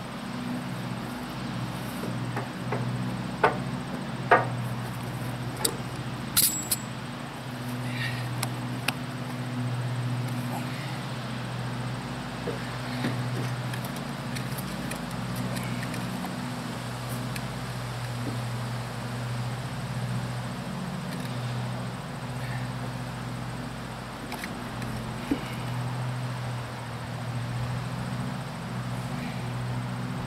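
A few sharp clicks and metallic knocks, the loudest about three to six seconds in, as a trailer wheel is handled and worked onto its hub studs, over a steady low hum.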